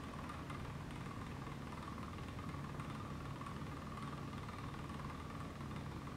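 Faint steady hum of laboratory equipment, with a thin high whine above it.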